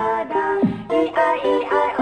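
Electronic remix music played on a pad-grid controller: a melody moving in stepped notes over a drum hit that drops in pitch.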